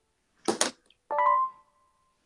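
Two sharp cracks in quick succession, then a short bright keyboard chord that rings out and fades.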